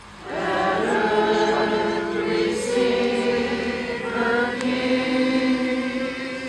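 A group of voices singing a slow Christmas carol together, holding long notes. There is a brief pause for breath right at the start, then the singing carries on.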